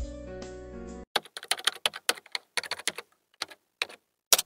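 A held musical chord from a jingle cuts off about a second in. Then comes a quick, irregular run of computer keyboard key clicks for nearly three seconds.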